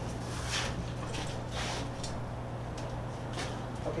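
Steady low hum and hiss with several short, high scraping hisses as long metal tongs lift a red-hot raku pot out of the open kiln.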